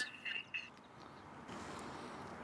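A short high-pitched chirp at the very start, then faint, steady outdoor background noise.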